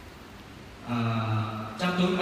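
A man's voice over the hall's microphone system, holding one low, drawn-out steady note after a quiet pause, then a higher voice coming in near the end; the hall is echoey.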